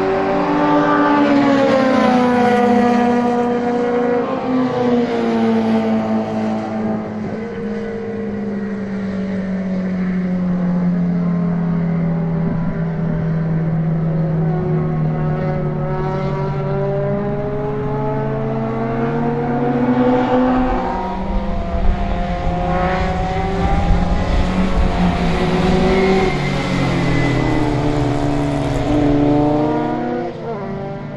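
Several racing cars' engines, heard from trackside. Their pitch falls through the first third as they slow for the corner, holds, then rises again about two-thirds in as they accelerate, with a low rumble joining at that point.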